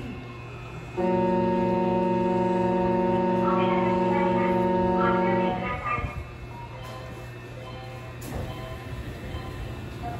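A horn sounds one loud, steady chord of several notes, held for about four and a half seconds before it stops, over a low background hum.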